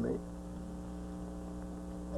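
Steady electrical mains hum on the recording, a low drone with a stack of even overtones, left alone after a man's last word ends at the start.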